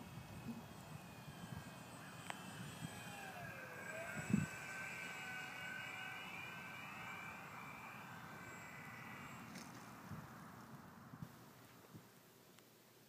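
The whine of an RC warbird's electric motor and propeller (ParkZone F4U-1A Corsair) flying overhead, its pitch gliding as it passes. The whine is fairly faint, over low wind rumble on the microphone, with a brief low thump about four seconds in.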